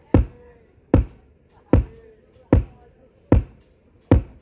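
Kick-drum thumps played through a large PA sound system during a sound check: five even, heavy beats a little under a second apart.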